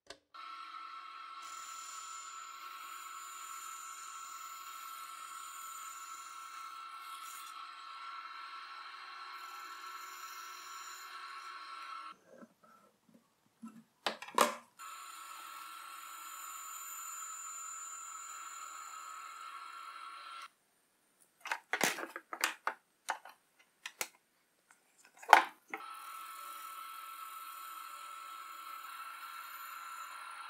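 Grizzly band saw running with a steady hum and hiss as it cuts a notch in a plywood panel, in three stretches that start and stop abruptly. Between them come a few sharp knocks of wood being handled.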